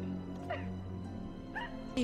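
A woman's short, whimpering cries, two brief rising sobs, over a low, steady music drone.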